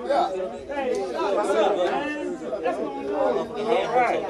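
Several people talking at once: indistinct, overlapping chatter with no single voice standing out.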